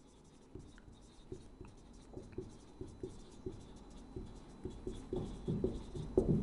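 Marker pen writing on a whiteboard: a quick, irregular run of short strokes as letters are written, getting louder and busier near the end.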